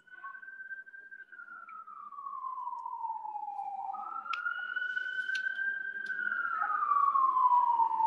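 An emergency vehicle siren wailing, its pitch sliding slowly down, jumping back up about halfway through, then sliding down again. It grows steadily louder as it approaches.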